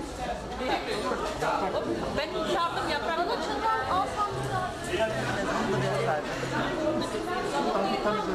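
Crowd chatter: many people talking at once around a food-serving table, no single voice standing out.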